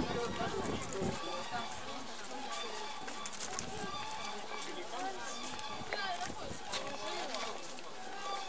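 Indistinct background chatter of several people talking at once, no single voice clear.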